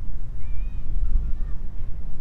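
Wind buffeting the microphone outdoors, a low uneven rumble, with a faint high chirp about half a second in.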